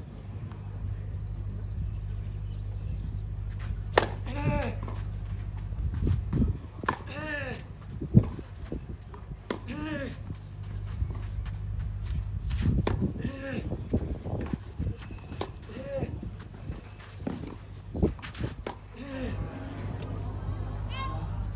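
Tennis rally on clay: racket strings striking the ball, a sharp knock every second or two, with the loudest hit about 8 s in. Players grunt in short bursts on their shots, about every three seconds, over a steady low hum.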